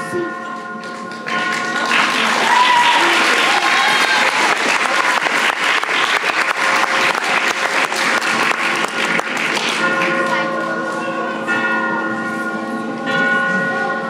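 An audience applauds over music with steady, held tones. The clapping starts about a second in and fades out about ten seconds in, leaving the music playing alone.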